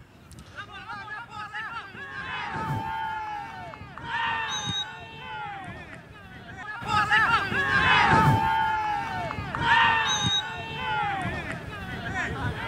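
Several voices shouting and calling out at once, overlapping into an unintelligible clamour that swells in waves and is loudest about eight seconds in.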